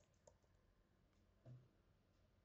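Near silence, with two faint clicks, one about a third of a second in and one midway through.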